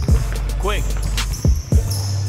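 Basketball dribbled on a hard court: three sharp bounces, one right at the start and two close together about a second and a half in, over a song with a heavy steady bass.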